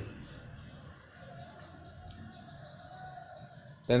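A small bird chirping, a quick run of short high notes at about four a second, starting about a second in.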